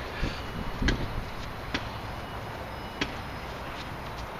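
Handling noise from gloved hands working in grass and soil, with a few sharp knocks about a second, a second and three-quarters and three seconds in.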